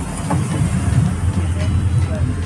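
Steady low rumble of road traffic close by, with faint background voices.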